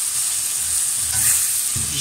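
Chopped onion, pepper and tomato frying in oil in a wok-style pan, sizzling steadily while a silicone spatula stirs them, with soft, regular scraping strokes.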